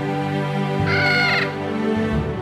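A single short crow-like caw, about half a second long, comes about a second in over steady background music from the film's score.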